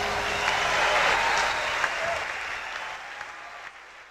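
A live audience applauding as a song ends, the clapping fading out steadily.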